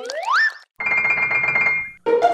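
Cartoon sound effects: a rising, whistle-like pitch glide lasting about half a second, then, after a brief gap, a steady high tone over a fast rattle for about a second that fades out just before the end.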